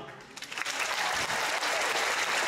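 Large theatre audience applauding, the clapping swelling in about half a second in as the last note of the music dies away, then holding steady.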